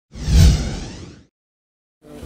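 Whoosh sound effect for an animated title graphic, a single sweep with a deep low boom under a hiss, swelling to a peak about half a second in and fading out just after a second.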